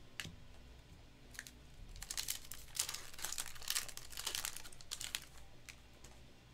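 Foil trading-card pack wrapper being crinkled and torn open: a couple of lone crackles, then a dense run of crinkling from about two seconds in until just past five seconds.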